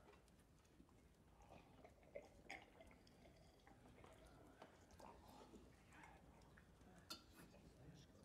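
Near silence, with faint scattered clicks and soft rustles of a hall of people drinking wine from cups.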